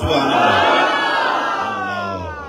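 A large crowd of men calling out together in one long, drawn-out cry of 'Allah' that slowly falls in pitch: a congregational zikr chant.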